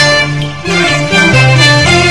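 Instrumental interlude of a Cantonese opera song: bowed strings play a short melodic phrase of changing notes over shifting low accompaniment between sung lines.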